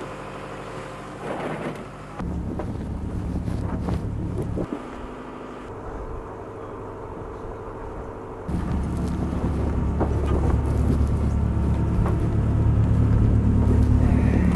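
A boat's engine droning steadily on deck, a low even hum. It steps abruptly louder about two seconds in, drops back just before five seconds, and comes up louder again past eight seconds. A few handling knocks come early on.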